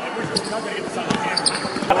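A basketball dribbled on a hardwood gym floor, a few sharp bounces, with voices chattering in the background.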